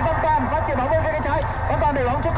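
Vietnamese football match commentary: a commentator's voice running on over steady low background noise from the broadcast.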